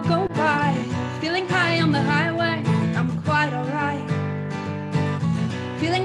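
A woman singing a slow pop song while strumming her own acoustic guitar, her held notes wavering over the chords. The sound carries through a video-call connection.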